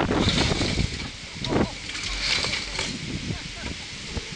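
Wind buffeting an outdoor security camera's microphone, with people's voices mixed in.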